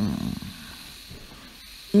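An elderly woman's voice trailing off in a drawn-out, low hesitation sound, then a pause with only faint hiss before she speaks again near the end.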